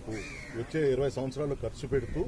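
A man speaking continuously, with a harsh bird call rising and falling over the voice about a quarter of a second in.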